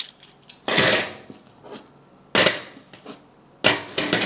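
Metal coin pattern weights clinking as they are picked up and set down on each other and on the table: three main sharp clinks about a second apart, each with a brief metallic ring.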